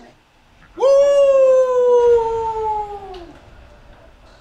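A man's long, loud, high "woo!" whoop, held for about two and a half seconds with its pitch slowly sinking before it trails off.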